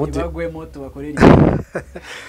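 A man talking, then about a second in a sudden, very loud, distorted burst into the microphone that lasts under half a second.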